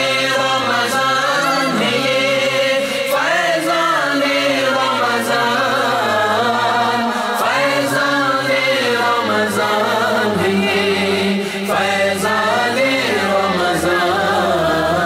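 Devotional chanting by unaccompanied voices: a melodic, gliding vocal line carried over a steady low drone, with no instruments.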